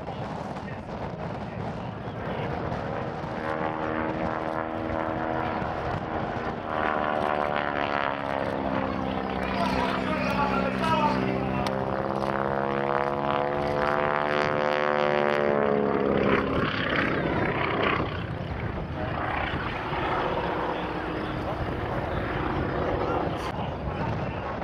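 Propeller biplane's engine running through an aerobatic display overhead, growing louder, with its pitch bending up and then down as it manoeuvres and passes. It is loudest about two-thirds of the way through, then drops away.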